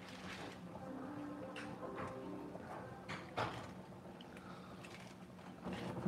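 Fresh spinach leaves being torn by hand into a metal pot of pasta, heard as faint scattered crackles and light clicks, one a little louder about halfway through.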